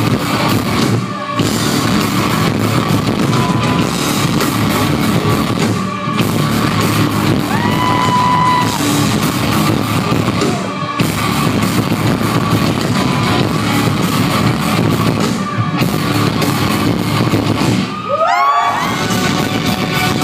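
Loud live rock band in a club, heard from the crowd: distorted electric guitars, drums and singing. There are a few brief dips, and near the end a short rising sweep of tones.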